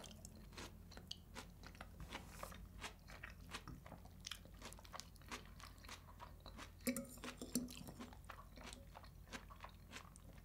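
Close-miked chewing of Puszta salad (pickled cabbage, peppers and onion) with herring: a steady run of small wet crunches and mouth clicks, with a louder stretch about seven seconds in.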